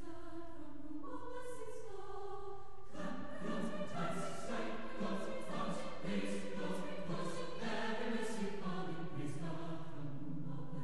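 Choir singing in sustained notes, the sound filling out with lower parts about three seconds in.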